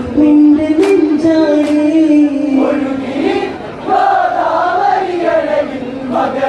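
A group of men singing an Onamkali folk song together in chorus, with a couple of sharp hand claps in the first two seconds.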